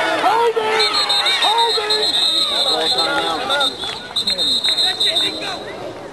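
Sideline crowd at a youth football game shouting and cheering over one another. A warbling whistle sounds from about a second in until near the end.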